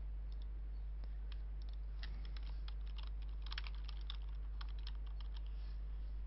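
Typing on a computer keyboard: a run of irregular light key clicks, over a steady low hum.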